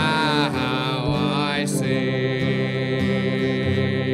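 A hymn sung with instrumental accompaniment, led by a man's voice, with one long note held through the second half.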